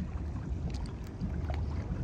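Low, steady rumble of an idling boat engine on the water.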